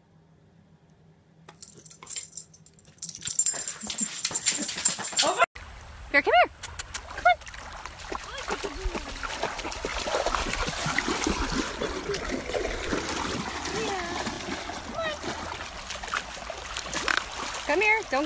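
A dog shaking and tearing at a toy, scattered light clicks and rattles, then after a cut a dog running through shallow creek water, a steady wash of splashing over most of the rest, with a few short voice-like calls.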